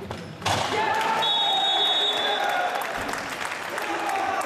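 Players' voices shouting and cheering in an echoing indoor sports hall during a futsal match, breaking out suddenly about half a second in and staying loud.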